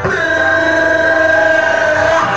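A loud, steady held electronic tone over the bar's PA, several pitches sounding together without wavering for about two seconds, starting suddenly and cutting off near the end.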